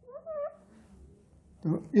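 Marker squeaking on a whiteboard as a line is drawn: two short rising squeaks in the first half second.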